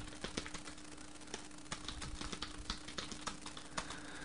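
Computer keyboard keys clicking as a short line of text is typed, an irregular run of keystrokes several a second. A faint steady hum lies underneath.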